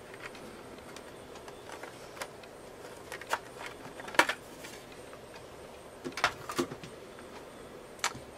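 Plastic clicks and snaps as the laptop's plastic bottom access panel is unclipped and lifted off by hand: about half a dozen short, sharp clicks scattered over a low steady hiss.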